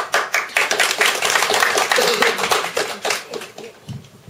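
Small audience applauding in a small room: dense clapping that starts abruptly and dies away near the end.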